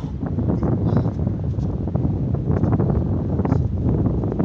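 Wind buffeting the microphone, a loud low rumble that gusts, with scattered short scuffs above it.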